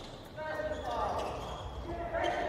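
Quiet indoor basketball-court sound: faint voices, with a ball bouncing on the court.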